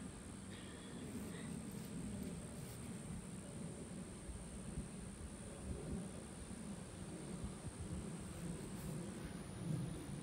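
Quiet outdoor background with a steady low rumble and a steady high-pitched whine that stops shortly before the end. A few faint chirps come about a second in.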